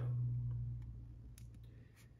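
A few faint clicks of a foil trading card being handled and tilted between the fingers, over a low hum that fades away in the first second and a half.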